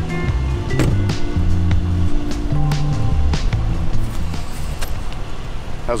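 Background music with a low bass line and regular drum hits.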